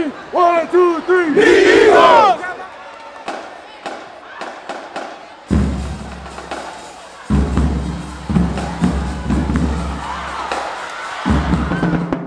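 A team shouting a chant together in a huddle, then the murmur of a large crowd in a gym. About halfway through, music comes in with deep held bass notes.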